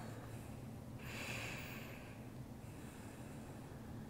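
Faint breathing: a slow, soft rush of breath starting about a second in, then another, over a low steady room hum.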